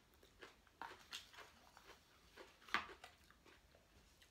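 A man chewing a mouthful of food close to the microphone: faint, scattered wet mouth clicks and smacks, the sharpest about three-quarters of the way through.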